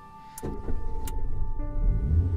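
A car driving up: a low engine rumble that starts suddenly with a click about half a second in and carries on, over soft background music.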